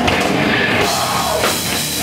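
Heavy metal band playing live: electric guitar, bass guitar and drum kit all crash in together right at the start and carry on in a dense, loud wall of sound.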